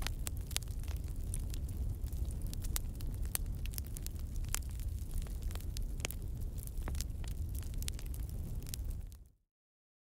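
Wood bonfire burning: a low steady roar with frequent sharp crackles and pops from the burning logs, cutting off suddenly near the end.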